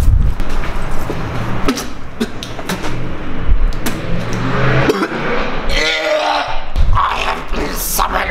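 A man's wordless vocal noises, with one drawn-out voiced sound about six seconds in.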